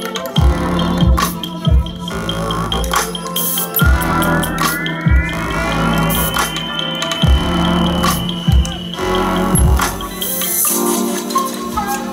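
Live electronic bass music played loud through a festival sound system: deep kick-drum hits under synthesizer parts, with a rising synth sweep in the middle that levels off and holds.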